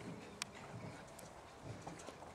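Golden retriever puppies scrabbling and stepping on a wooden platform: faint soft thumps, with one sharp click about half a second in.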